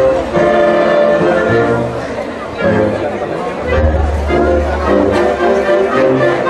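A live band with brass, a tuba among them, playing a piece in held chords, with a deep bass note sounding strongly in the second half.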